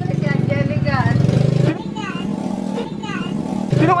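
A vehicle engine running at low, steady revs, heard under voices and a laugh.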